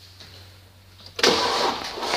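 Mercedes-Benz CLS500's 5.0-litre V8 being started: after a second of faint low hum, the engine cranks and catches with a sudden loud rise about a second in.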